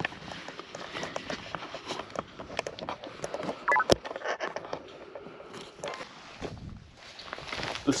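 Close handling noise from a small action camera being fiddled with at chest level: clothing rustle and a run of small plastic clicks, with a short high chirp and then one sharp click about four seconds in.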